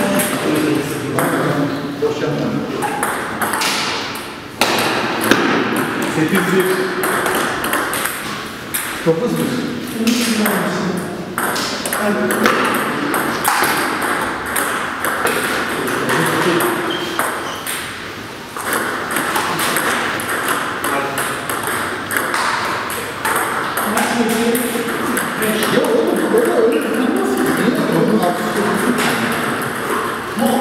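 Table tennis balls being hit back and forth in rallies: quick, sharp clicks of the ball off rubber-faced paddles and bouncing on the table, with voices talking in the background.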